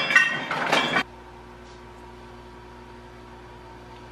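Refrigerator door dispenser filling a stainless-steel water bottle, a loud clattering rush that cuts off suddenly about a second in. A faint steady hum follows.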